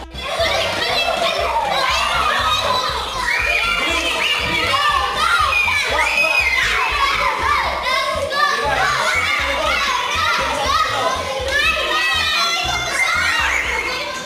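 A group of children shouting and calling out over each other while they play a game.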